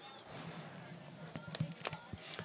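Faint open-field ambience with distant players' voices, and a few sharp clacks in the second half, the two loudest close together near the end: field hockey sticks striking the ball.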